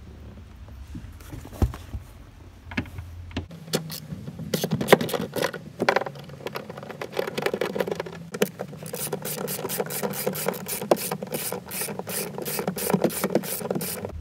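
Ratchet clicking as 10 mm nuts holding the convertible top frame are run off. After a few scattered knocks it settles into rapid, steady clicking for the second half.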